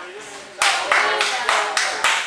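Hands clapping in a steady rhythm, about three claps a second, starting about half a second in.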